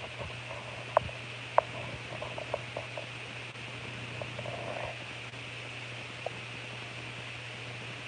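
A steady low hum under a faint hiss, with two sharp clicks about one and one and a half seconds in and a few fainter ticks.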